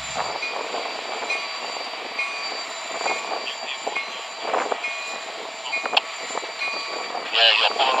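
Union Pacific EMD SD70M diesel locomotive standing at the head of a freight train, its engine running with a steady hum, with a sharp click about six seconds in.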